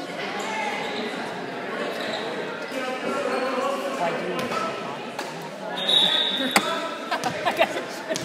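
Players and spectators talking in a large echoing gym. About six seconds in comes a short, high whistle blast from the referee, then a volleyball bouncing sharply on the hardwood floor several times, as before a serve.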